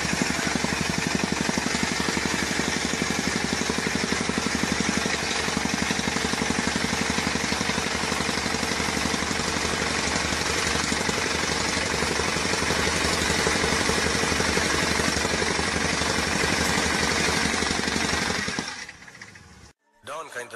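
Petrol rammer (jumping-jack compactor) running, its engine and pounding foot making a rapid, steady hammering rhythm that fades out near the end.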